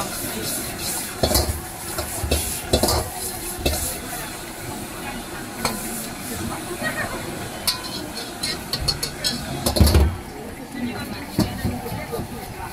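Egg fried rice sizzling in a wok while a metal ladle scrapes and clanks against the wok as the rice is stirred and tossed, with a quick run of ladle clicks past the middle and a heavier knock about ten seconds in.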